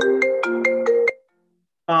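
A phone ringtone coming through the video call: a short chiming melody of stepped notes lasting just over a second, then cutting off.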